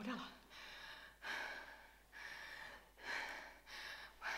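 A woman breathing heavily and audibly: about five breaths in and out in a row, with no words, in a tense, upset moment.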